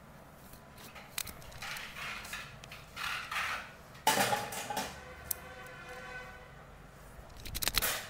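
Hairdressing scissors and a comb working through wet hair: a series of short rustling strokes and snips, the loudest coming suddenly about four seconds in, with a quick run of clicks near the end.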